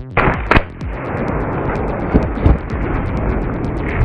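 A layered water balloon bursting as a knife slices it, heard slowed down: a loud burst near the start and a second bang about half a second in, then a steady rush of water pouring out for the rest.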